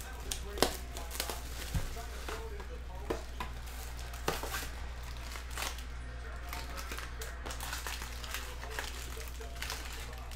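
Plastic shrink wrap crinkling as it is torn off a trading-card hobby box, then the cardboard box being opened and handled, with scattered short clicks and rustles over a steady low hum.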